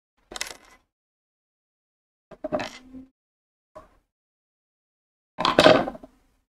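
A few brief handling noises as the T-shirt yarn crochet piece is worked by hand, ending with a louder clink about five and a half seconds in as a metal sewing needle is set down on the wooden table.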